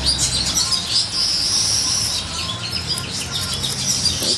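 Birds chirping outdoors: many short, high calls in quick succession over a steady high-pitched note.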